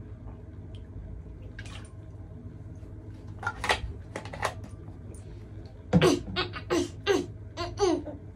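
Short bursts of stifled, muffled giggling from a mouth held shut, scattered with quiet gaps and most frequent near the end.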